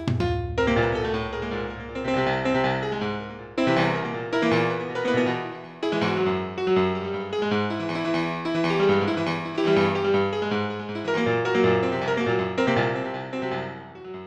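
Instrumental background music led by piano, playing a continuous run of notes over a low bass that drops out about four seconds in.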